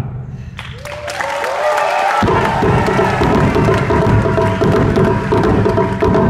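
Ensemble of Japanese taiko drums struck with sticks. The drumming breaks off at the start, leaving a short gap with a few rising and falling voice calls. About two seconds in, the drums come back in together with dense, fast strokes.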